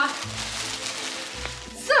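Crinkling rustle of plastic gift packaging that fades out over the first second and a half, over background music with steady held notes and a low pulse.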